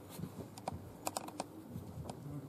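A handheld microphone being handled as it is passed from one person to another: a few faint, sharp clicks and knocks, most of them bunched together about a second in.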